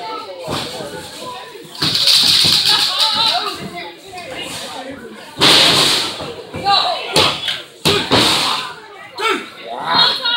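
Spectators shouting and cheering in bursts, with several sharp thuds of wrestlers landing on the ring mat.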